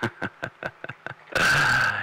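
A man chuckling over CB radio audio in short, breathy bursts. About a second and a half in comes a loud burst of radio hiss with a steady whistle in it.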